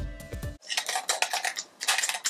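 Music cuts off abruptly. Then come rapid runs of sharp clicking and clacking, hard plastic on plastic, as two small 3D-printed figurines are knocked together in the hands, in two bursts with a short pause between.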